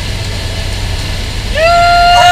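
Cessna Grand Caravan's turboprop engine heard from inside the cabin, a steady low drone as the plane rolls along the runway. About one and a half seconds in, a person's voice calls out over it, holding one pitch.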